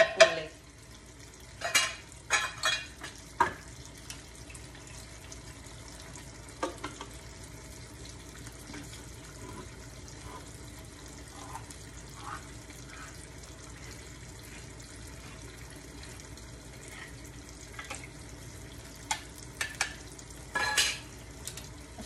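Food frying in a nonstick pan with a steady, faint sizzle. A wooden spatula knocks and scrapes against the pan several times in the first few seconds, once more a little later, and again near the end.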